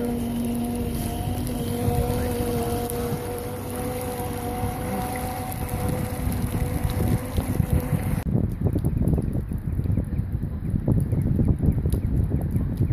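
Outboard motor of a rigid inflatable boat running steadily as the boat pulls away from the jetty. About eight seconds in the engine sound gives way to wind buffeting the microphone.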